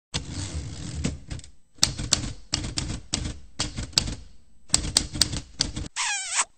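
Typewriter typing sound effect: runs of rapid key clatter in short bursts with brief pauses, with a few sharper clacks among them.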